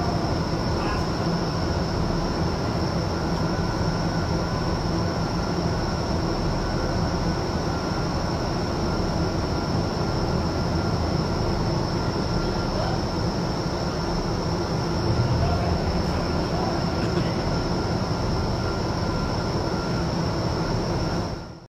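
iFly indoor skydiving vertical wind tunnel running with a flyer in it: a steady rush of air and fan noise with a constant high whine above it.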